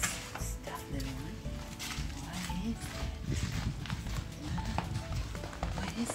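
Footsteps walking along a paved alley, over background music.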